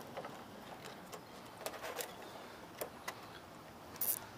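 Plastic cable ties handled in the fingers: a few faint scattered clicks over a quiet outdoor background.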